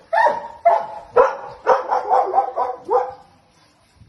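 Dog barking: a run of sharp barks, about half a second apart at first, then coming faster, stopping about three seconds in.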